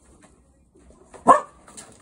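A cocker spaniel barks once, a single short sharp bark a little over a second in, with faint rustling and light taps around it.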